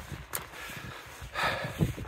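Wind buffeting the phone's microphone outdoors, an uneven low rumble, with a brief louder rush about one and a half seconds in.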